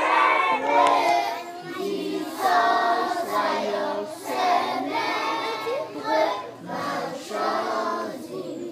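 A large group of young schoolchildren singing together in chorus, phrase after phrase with short breaths between.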